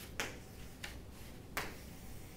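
Chalk striking a chalkboard during writing: three sharp taps, each roughly two-thirds of a second after the last.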